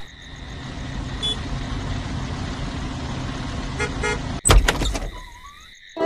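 A motor vehicle's engine running, growing louder over the first second and then holding steady, broken by a loud thump about four and a half seconds in, after which it fades.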